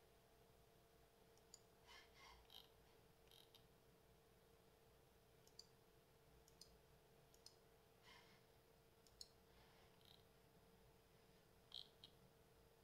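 Near silence: a faint steady hum with a few faint, scattered computer mouse clicks.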